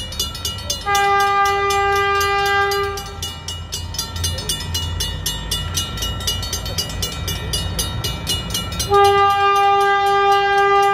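Two Griswold mechanical level-crossing bells ringing in rapid, even strokes, while a KiwiRail DSC-class diesel locomotive sounds its horn in two long blasts, one about a second in and one near the end, over a low rumble.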